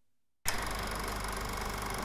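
Film projector running sound effect: near silence, then about half a second in a steady, fast mechanical clatter starts abruptly and holds.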